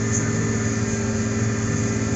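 Tractor engine running steadily while the tractor pulls a disc across the field, heard from inside the cab as an even drone.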